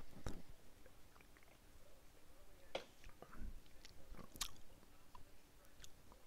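Low room tone with a few faint, scattered clicks.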